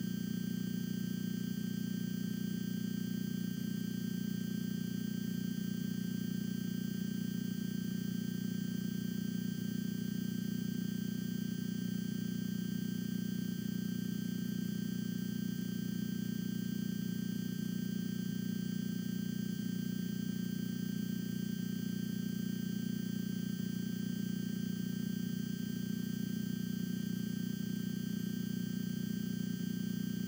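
A steady low electrical hum with faint hiss, unchanging throughout and with no room sounds on top: the noise of the audio line while the microphone is switched off.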